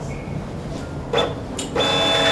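Point-of-sale receipt printer at a shop checkout. A short high beep comes just after the start, a brief burst of printing follows about a second in, and printing starts up steadily near the end.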